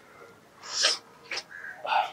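A short breathy noise from a person, a little over half a second in, then a small click and a brief sound from a voice near the end.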